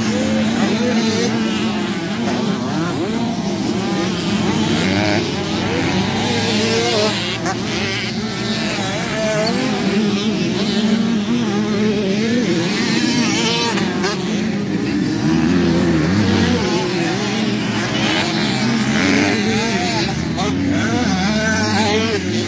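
Honda CRF150RB dirt bike's four-stroke single-cylinder engine revving up and down as it is ridden around a motocross track, its pitch rising and falling continuously through throttle changes and gear shifts.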